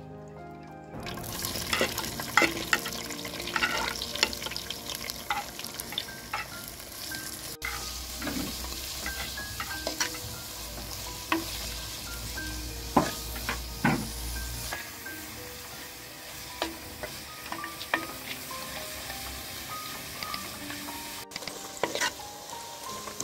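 Onions and curry leaves, then chicken pieces, sizzling in hot coconut oil in a clay pot, with a wooden spoon scraping and knocking against the pot as it is stirred. The sizzling starts suddenly about a second in.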